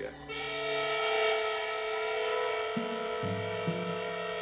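Film-score music: a sustained high chord held steady, with low notes coming in about three seconds in and changing every half second or so.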